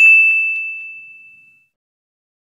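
A single bright ding sound effect, like a notification bell: one high ringing tone that fades out over about a second and a half, with a couple of faint clicks just after it starts.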